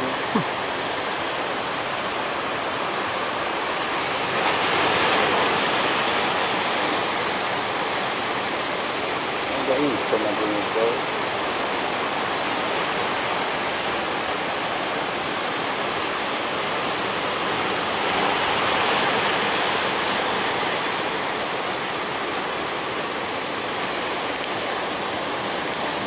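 Ocean surf breaking on the shore: a steady rush of water that swells louder twice as waves crash, about five seconds in and again about eighteen seconds in.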